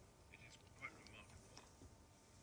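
Near silence: a pause in speech, with a few faint, indistinct voice sounds in the first second.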